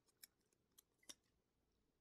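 Near silence with a handful of faint, crisp clicks of a paper sticker being handled and pressed over a planner page, the loudest about a second in.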